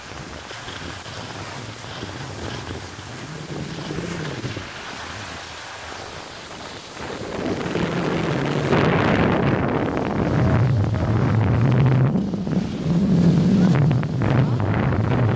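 Wind buffeting a handheld camera's microphone as a skier glides downhill, mixed with the hiss of skis sliding on snow. It gets louder about seven seconds in.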